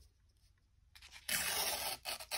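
Patterned collage paper torn along a wavy-edged tearing ruler: one quick tear, lasting under a second, that starts a little past halfway.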